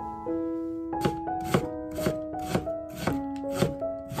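Kitchen knife slicing a carrot into thin strips on a wooden cutting board, knocking on the board about twice a second from about a second in, over gentle piano music.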